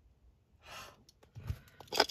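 A woman's breathy sigh, about half a second long, followed by a few faint clicks and a soft thump.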